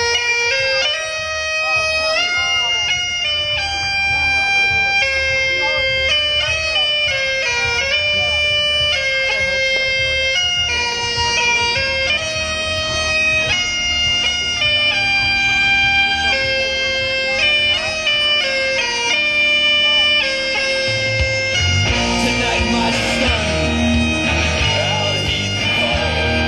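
Bagpipe entrance music played over a PA loudspeaker. A solo pipe melody of held notes is joined by a steady low drone about ten seconds in, then by a rock band with drums and electric guitar near the end.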